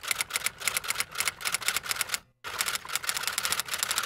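Typewriter sound effect laid under a title card: rapid, even keystrokes clacking, with a brief break a little after two seconds in.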